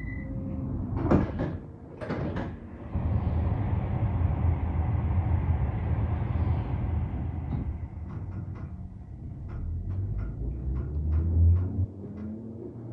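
London Underground 1972 stock tube train's sliding doors closing with two knocks about a second apart, then the train pulling away: a steady rushing noise and low rumble, with a run of clicks from the wheels over rail joints from about eight seconds in.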